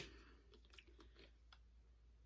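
Near silence: room tone with a few faint, soft ticks from a plastic foaming hand-soap bottle being handled.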